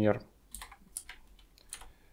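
Computer keyboard typing: a handful of separate, unhurried keystrokes while code is edited in a text editor.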